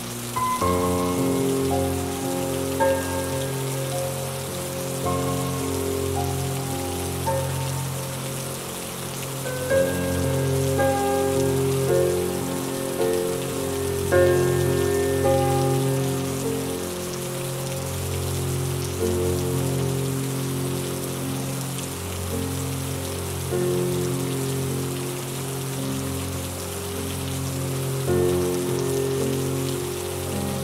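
Steady rain falling, with a slow, calm instrumental piece of long held notes playing over it.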